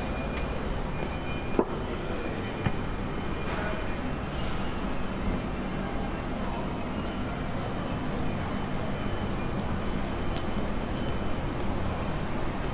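Street ambience dominated by a steady low rumble of traffic, with a sharp knock about one and a half seconds in and a smaller one a second later.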